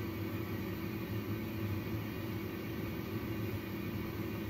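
Steady machine hum and airy hiss from a neonatal incubator and its breathing-support equipment, with a low drone and a faint steady tone above it.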